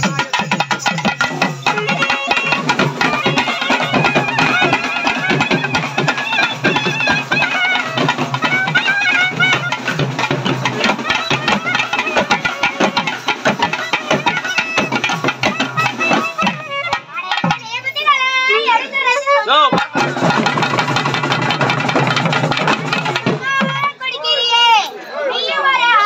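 Live Tamil karagattam folk music: stick-beaten barrel drums keep a fast, dense rhythm under a wavering melody line. Twice in the second half, around the seventeenth and twenty-fourth seconds, the drums drop out briefly and the melody carries on almost alone.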